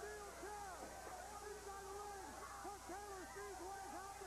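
Arena wrestling crowd shouting and hooting: many overlapping yells that rise and fall in pitch, each about half a second long, over a steady low electrical hum.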